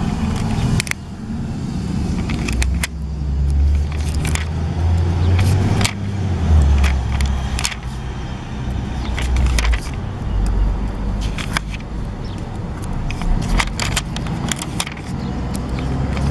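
Crackling of plastic sticker sheets and backing paper as stickers are peeled off and pressed down, with many short sharp clicks, over a continual uneven low rumble.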